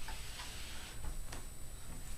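A few light taps and clicks as a small paper cup is set down and handled on a hard tabletop, about four in the first second and a half, unevenly spaced.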